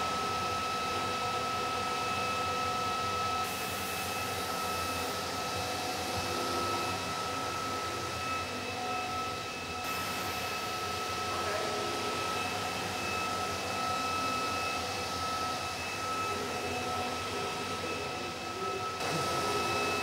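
Steady background hum of a workshop, a mechanical drone with a thin high-pitched whine running over it; the hiss shifts abruptly a few times.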